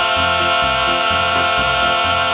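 Instrumental break in a live southern gospel song: the band holds a sustained chord over a bass line that changes note about twice a second, with no singing.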